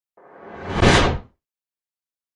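A whoosh sound effect that swells for about a second and then drops away quickly.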